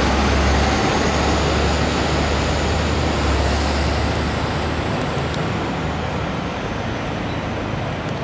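A large truck's engine running close by, a low rumble over steady street traffic noise; the rumble drops away about halfway through.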